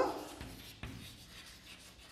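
Chalk writing on a chalkboard: faint scratching with small taps as the letters are formed, one sharper tap just under a second in.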